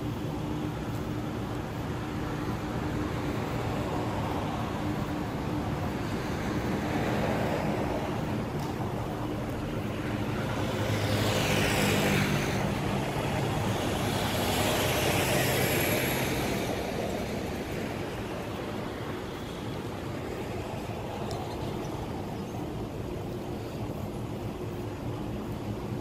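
A steady low engine hum, with two vehicles passing by that swell and fade about ten and fifteen seconds in.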